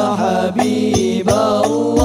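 Male vocal group chanting sholawat together into microphones in a hadrah al-banjari style, the voices sliding through long melismatic phrases. A few sharp frame-drum strokes fall under the singing.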